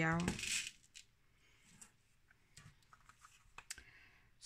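Faint tabletop handling: a plastic jar of small decorative stones is set down and a painted card picked up, with a short rustle about half a second in and scattered light clicks and taps.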